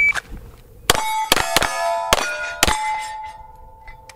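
A shot timer's start beep cuts off, then five quick shots from a Steyr L9-A1 9mm pistol, each answered by the clang of a hit steel plate. The last plate rings on for over a second.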